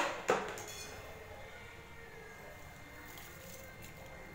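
A single short click just after the start, then faint steady background noise with a thin, steady high hum.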